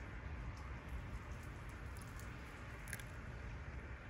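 A few faint, short crunchy clicks over a quiet outdoor background: a small piece of dry tree bark being bitten and chewed, described as very crunchy.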